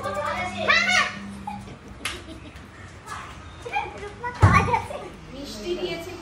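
Several women chattering and squealing excitedly over one another in a small room, with a brief low bump about four and a half seconds in.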